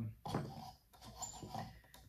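Faint creaks and squeaks from a small hand-worked wooden linkage prototype of a fish-tail drive as its parts are moved.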